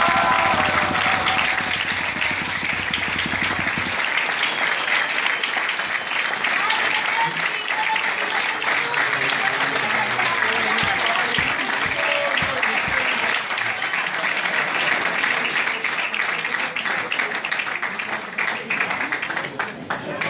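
Audience applauding steadily after a performance, with a few voices among the clapping. The last notes of music die away in the first second or so.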